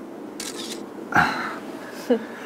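Smartphone camera shutter sound as a photo is taken: a short hiss about half a second in, then a sharper, louder click a little over a second in.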